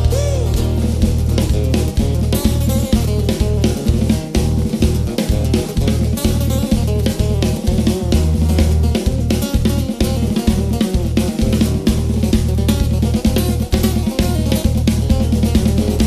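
Live rock band playing an instrumental passage without vocals: a full drum kit drives a steady beat on bass drum and snare, with guitars underneath.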